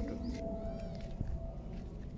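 A single short animal call, rising and falling in pitch, about half a second in, over a thin steady hum and low rumble.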